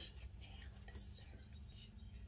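Quiet room tone with a steady low electrical hum, and faint breathy mouth noise from the speaker about a second in.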